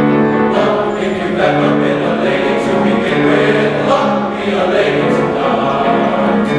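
Men's choir singing in harmony, a series of sustained chords held about a second each, with piano accompaniment.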